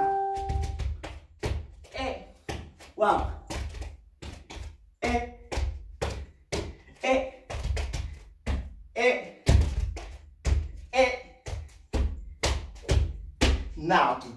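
Recorded sabar drumming: a Senegalese drum ensemble playing fast, sharp stick-and-hand strokes, with loud accents about twice a second over a heavy low end.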